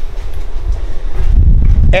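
Low rumbling noise on the microphone, building from about a second in until it is loud, as the camera is carried around to a new position.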